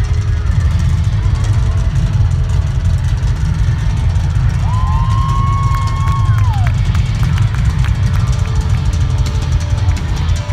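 Live rock band playing loud, heard from within the audience, with heavy bass and drums. A single held high note rises in, sustains for about two seconds and falls away about halfway through.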